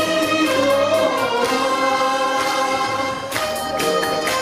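Live saxophones playing a melody in long held notes over musical accompaniment. A sharp rhythmic beat returns near the end.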